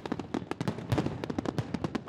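Fireworks display: a rapid, irregular crackle of many sharp pops and bursts, several each second.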